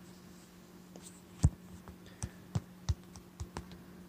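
Keystrokes on a keyboard as a word is typed into a search: about eight irregular clicks starting about a second and a half in, the first the loudest, over a faint steady hum.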